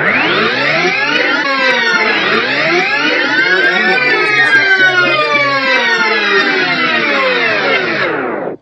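Tape-rewind sound effect: a loud, dense swirl of whining pitches that sweep up and curve back down, starting suddenly and running without a break.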